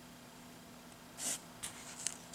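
A hand brushing over the newsprint page of an old comic book as it is leafed through: a soft paper swish a little over a second in, then a brief second rustle.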